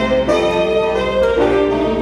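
School band music: held chords on wind instruments that change twice.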